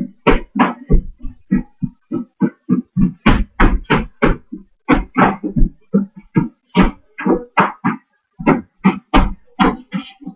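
Tap shoes striking a hard floor in a quick, uneven run of sharp taps, about three a second.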